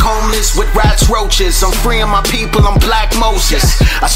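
Hip hop track: a rapper delivering fast verses over a beat with a steady heavy bass and regular drum hits.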